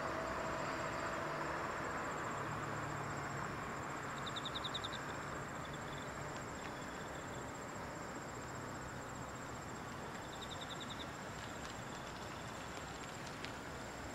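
Insects chirping outdoors: a steady, thin, high pulsing trill, with two short, faster runs of chirps about four and ten seconds in, over a steady background hum.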